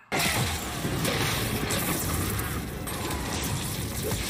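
Magic-duel sound effects from a fantasy TV series: a dense, continuous wash of energy blasts and crackling magic.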